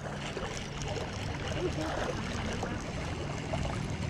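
Steady flowing river water, with faint handling noise from a spinning rod and reel as a hooked fish is reeled in.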